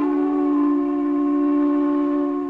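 Solo flute holding one long, steady two-note sound: a strong low note with a second pitch sounding above it, the singing-while-playing and multiphonic technique of this rock-style piece.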